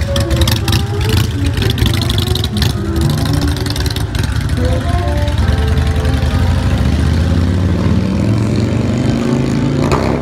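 Street ambience: a steady low engine rumble from a vehicle, with music playing underneath it.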